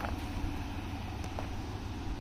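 Pickup truck engine idling: a steady low hum under faint outdoor background noise.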